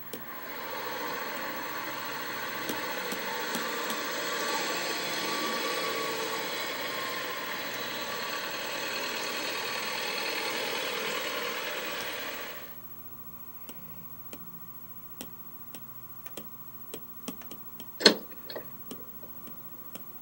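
Street traffic ambience from a story app's soundtrack, played through a tablet speaker: a steady noisy wash of cars that cuts off suddenly about 13 s in. After it comes a run of faint, irregular ticks and clicks, with a louder tap near the end.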